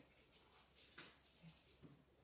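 Near silence with a few faint short rustles and ticks, about a second in: masking tape being peeled slowly off watercolour paper.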